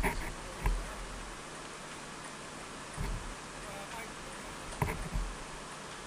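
Wind buffeting an open-air camera microphone, with a steady hiss of wind and choppy sea broken by several short low thumps of gusts.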